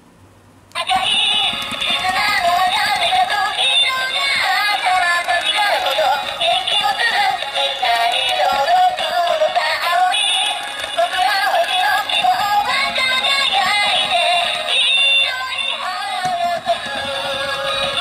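Walking, singing Pikachu plush toy playing its electronic song with synthetic singing through a small built-in speaker, starting suddenly about a second in after its paw button is pressed. The sound is thin, with almost no bass.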